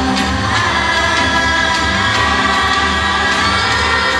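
Children's choir singing with held notes over instrumental accompaniment that has a steady bass.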